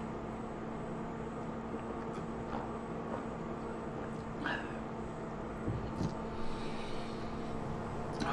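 Quiet room tone with a steady low electrical hum, broken by a few faint, brief small noises.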